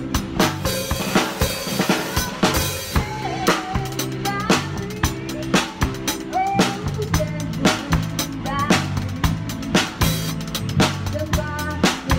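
Drum kit played with sticks in a steady rock beat, with sharp regular snare and bass-drum hits and cymbal wash, played along to a recorded song with a bass line and melody.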